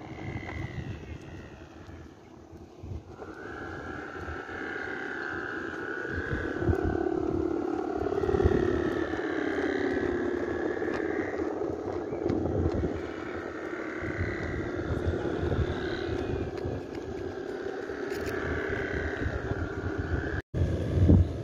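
Bow hummers (guangan) on flying Balinese kites droning in long, wavering tones that swell and fade, louder from about three seconds in, over wind rumbling on the microphone.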